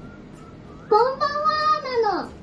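A high, sing-song voice holding one drawn-out note, starting about a second in and sliding down in pitch at the end.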